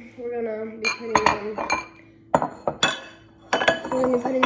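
Ceramic bowls clinking and knocking against each other and a stone countertop as they are set down: about half a dozen sharp clinks with brief ringing, starting about a second in.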